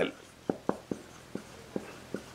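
Marker pen writing on a whiteboard: about five short, quiet strokes of the tip against the board, unevenly spaced as the letters are formed.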